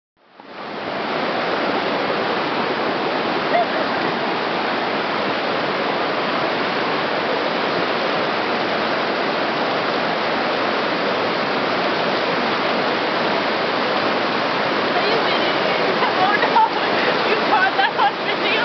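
River rapids rushing steadily over a shallow rocky bed, a constant wash of white-water noise that fades in over the first second.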